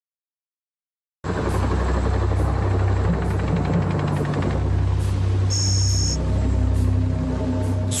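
A helicopter flying, its rotor beating, laid over background music; both start suddenly about a second in. A short high tone sounds about halfway.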